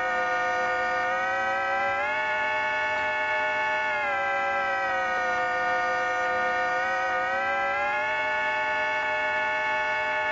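Live electronic drone played through hand-held gestural controllers: a dense chord of many held tones that slides in pitch as one. It sits low at first, rises about two seconds in, sinks again around four seconds, and climbs back up around seven to eight seconds, at a steady loudness.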